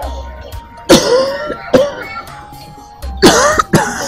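An older woman coughing hard in two fits, one about a second in and a longer one about three seconds in, as an ailing woman in pain. Background music holds a sustained note throughout.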